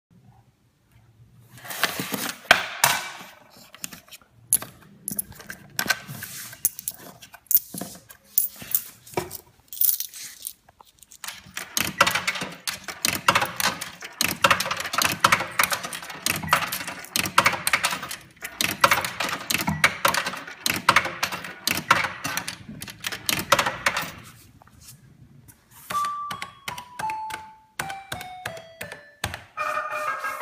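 Metal coins clinking and clicking as they are handled and fed one after another into a coin slot machine's coin acceptor, in loose clusters and then a long dense run. Near the end the machine plays a run of electronic beeps stepping down in pitch.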